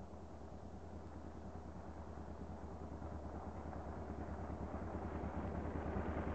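Motorcycle engine running at low speed as the bike rides up, its steady low hum growing louder as it approaches.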